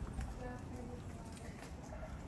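Quiet footsteps of someone walking on a paving-stone path.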